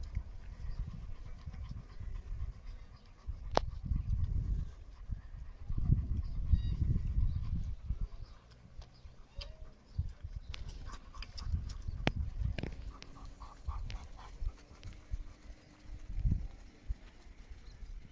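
A litter of puppies suckling from their mother dog, with a few faint short squeaks around the middle, over gusty wind rumbling on the microphone and a few sharp clicks.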